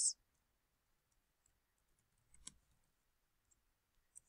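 Near silence with a few faint computer keyboard keystrokes, the clearest one about two and a half seconds in.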